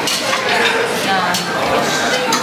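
Clinking of dishes and serving cutlery in a busy buffet dining room, with background chatter of voices.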